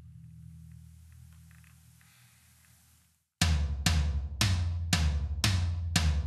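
Electronic tom voices from a Roland TD-25 V-Drums module, set to a 14-inch heavy tom: a low tom ring fading away with a few faint clicks, then, after about three and a half seconds, six even tom strikes about half a second apart, each ringing on long.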